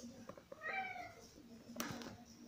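A domestic cat gives one short meow about half a second in, its pitch sliding slightly downward; a brief knock follows near the end.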